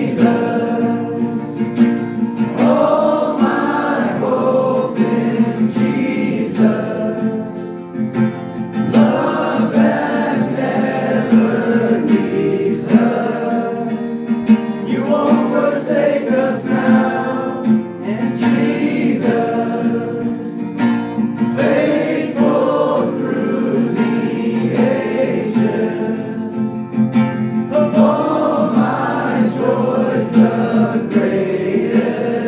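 A worship song: acoustic guitar strummed steadily under a group of voices singing.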